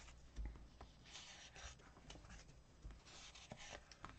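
Faint rustling and scratching of paper as planner sticker sheets and the page are handled, with a few light taps.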